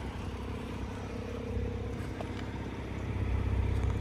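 A 2019 Porsche 911 Targa 4 GTS's twin-turbo flat-six idling steadily with a low hum, a little louder near the end.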